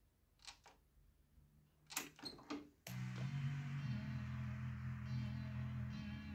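Kenwood KX-550HX cassette deck's transport giving a few light mechanical clicks as play engages. About three seconds in, music recorded on the tape starts suddenly and keeps playing.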